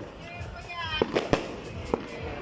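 Firecrackers going off: a few sharp bangs, three in quick succession about a second in and another near the end.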